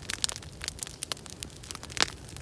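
Open wood fire crackling with irregular sharp pops and snaps, a louder snap near the end, while a plucked duck is held in the flames to singe off its last feathers.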